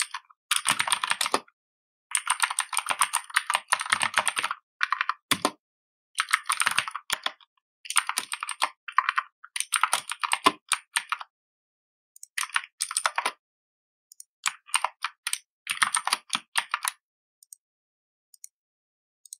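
Typing on a computer keyboard: fast runs of key clicks in bursts of a second or two, broken by short pauses.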